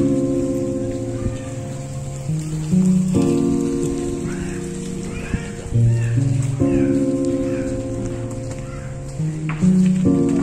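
Background music: sustained chords that change every few seconds, with a bass note that steps up and down.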